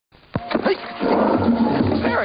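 Wild animal calls and cries in a jungle soundtrack: a sudden start about a third of a second in, then several overlapping calls that bend in pitch and thicken into a busy chorus about a second in.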